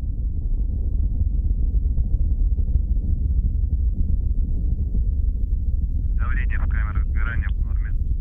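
Soyuz rocket's four liquid-fuel strap-on boosters and core engine firing in ascent, heard as a steady low rumble. About six seconds in, a brief burst of radio voice comes in over it.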